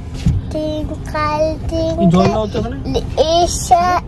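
A young child singing a short phrase over and over in brief held notes, over a low steady rumble.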